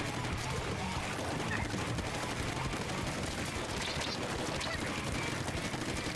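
Video game audio: a steady stream of rapid ink-weapon fire and splattering from a shooter game, with no single hit standing out.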